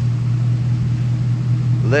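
The 6.2-liter gas V8 of a 2015 Ford F-250 idling, a steady low drone.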